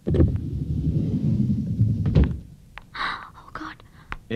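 A low rumbling thud that lasts about two seconds and stops abruptly, then a brief soft breathy sound about three seconds in.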